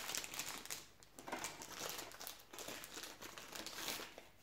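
Clear plastic bag crinkling as hands unwrap the Gear VR controller from it, irregular rustling with a short lull about a second in.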